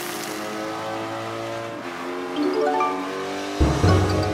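Cartoon background music with held notes and a stepwise rising phrase. Near the end a loud, low pulsing beat comes in suddenly.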